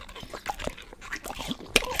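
English bulldog biting and chewing on crisp food held to its mouth, close to the microphone: wet, slobbery mouth sounds with irregular crisp clicks, the loudest crunch just before the end.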